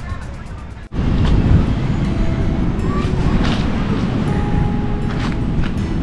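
Quiet room ambience with background music cuts off abruptly about a second in. It is replaced by loud, steady wind rumbling on the microphone outdoors, with music still faintly audible.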